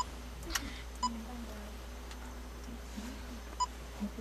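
Three short electronic beeps: one at the start, one about a second in and one near the end, with a single sharp click about half a second in.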